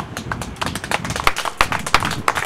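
Scattered hand clapping from a few people, irregular sharp claps that grow denser from about half a second in.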